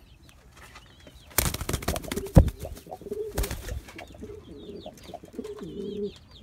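Cuban Pouter pigeon cooing, a run of low repeated coos. About one and a half seconds in and again at three and a half seconds, loud flurries of wing flapping cut in.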